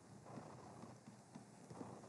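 Faint, irregular taps and light scratches of a stylus on a tablet screen as handwriting is drawn, over near silence.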